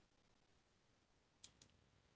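Near silence, broken by two faint, short clicks in quick succession about one and a half seconds in.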